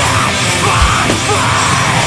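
Screamo metal band playing live: distorted electric guitar and drums under a screamed vocal, loud and dense throughout.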